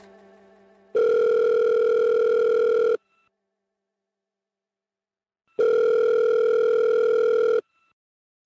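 Telephone ringback tone on a call: two rings, each a steady tone about two seconds long, about two and a half seconds apart.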